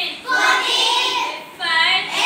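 A group of young children singing together in unison.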